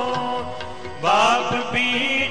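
Sikh Gurbani kirtan: a devotional hymn sung with harmonium accompaniment. Held notes fill the first second, then the singing voice comes back in with sliding pitches about a second in, noticeably louder.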